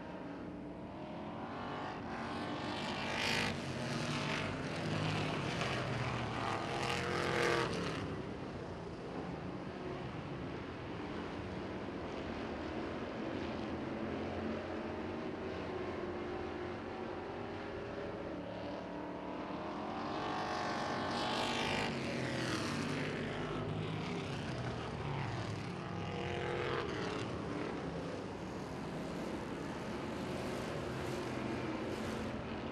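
A field of classic-bodied dirt-track race cars running laps, their engines rising and falling in pitch as they pass. The engines swell to two louder passes, a few seconds in and again about two-thirds of the way through.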